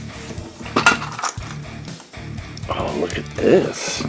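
Small Micro Machines toy vehicles being handled on a tabletop: light clinks, with one sharp click about a second in, over background guitar music.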